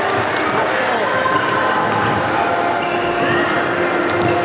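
Futsal ball being kicked and hitting the wooden floor of an indoor sports hall, with sharp knocks scattered through, over steady calling and shouting from players and onlookers.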